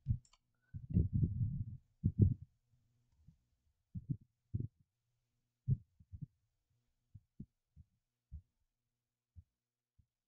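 Muffled low thuds of computer keyboard keystrokes, sparse and irregular: a short burst of typing about a second in, then single taps every half second to a second.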